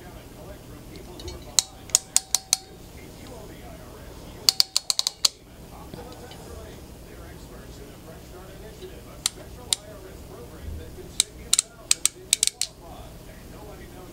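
Pass-through RJ45 crimp tool clicking as its handles are squeezed, crimping a shielded EZ-RJ45 Cat6 plug and cutting off the conductor ends. The clicks come in four quick runs: about five, then six, then two, then about seven.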